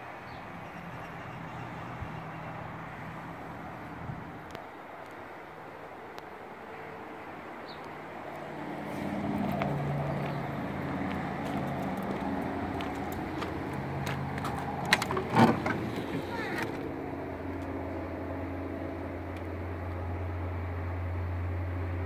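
Steady outdoor background noise with a low engine hum, a cluster of sharp clicks and rattles about fifteen seconds in, and a steadier low hum through the last few seconds.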